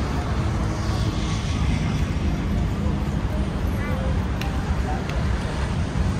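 Outdoor city ambience: a steady rumble of road traffic, with faint voices of people nearby.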